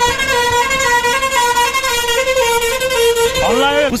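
A bus's musical horn playing a tune of held, steady notes that step between a few close pitches, sounding throughout.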